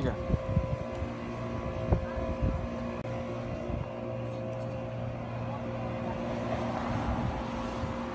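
A motor or engine running steadily at one fixed pitch, with a few light knocks in the first couple of seconds.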